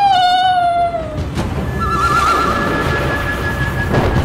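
A woman's high, wavering whine that falls in pitch and fades out about a second in. It gives way to a swell of dramatic background music with a warbling tone.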